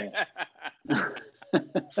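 Men laughing, a run of short chuckling bursts.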